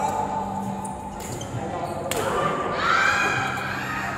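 Raised voices of badminton players exclaiming in a large, echoing sports hall, with two sharp knocks about one and two seconds in.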